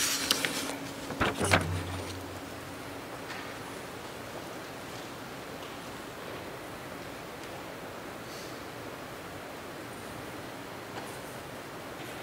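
Steady, even room hiss with a few sharp clicks and knocks in the first two seconds and a brief low hum about a second and a half in.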